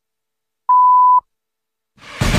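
The long final pip of the BBC time signal: one steady, high electronic beep about half a second long, following shorter pips at one-second intervals and marking the top of the hour.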